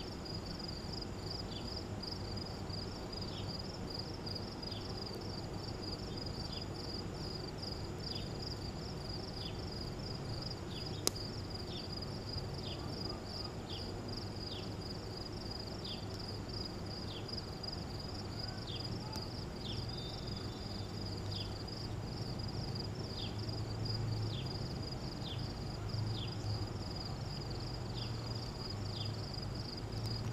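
Crickets chirping in a steady, fast-pulsing high trill, with short falling chirps repeating about once a second; a single sharp click about a third of the way in.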